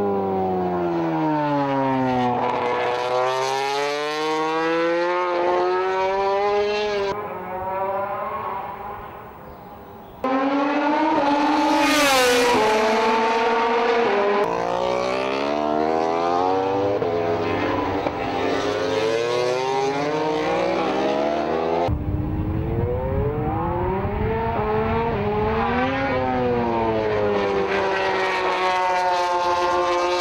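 Honda RC213V MotoGP bikes' V4 engines at racing speed, pitch climbing as they accelerate through the gears and falling away on braking and as they sweep past. Several passes are cut one after another, with a quieter stretch about seven to ten seconds in.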